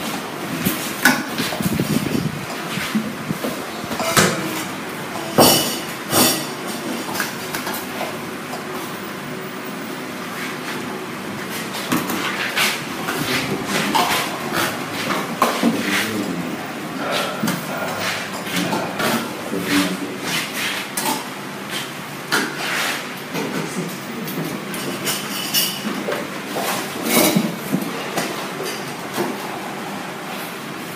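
Spoons and plates clinking and knocking at a meal table, a scatter of sharp clicks throughout, over a low murmur of indistinct voices in the room.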